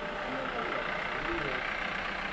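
Steady noise of a vehicle engine idling, with low talk over it.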